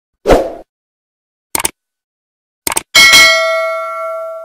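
Subscribe-button animation sound effects: a short hit about a quarter second in, a click at about one and a half seconds and a quick double click at under three seconds, then a bright notification-bell ding that rings on and slowly fades.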